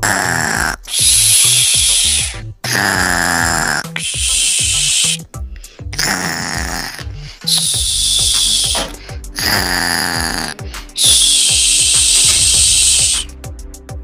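A cartoon snoring sound effect: a rasping inhale snore alternating with a hissing exhale, four times over, a sleeping doll's snores.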